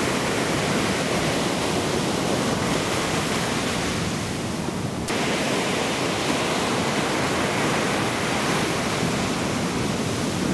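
Breaking ocean surf, a steady dense wash of wave noise. It eases slightly about four seconds in and changes abruptly about a second later.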